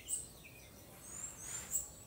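Small birds chirping faintly: a few short, very high chirps and quick rising whistles, with a louder chirp near the end.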